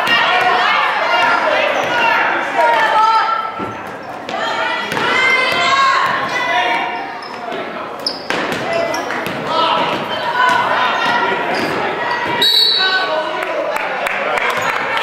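A basketball bouncing on a hardwood gym floor as it is dribbled, with shouting voices through most of it and the reverberation of a large gym. A few sharp knocks stand out, about a quarter of the way in, just past halfway and near the end.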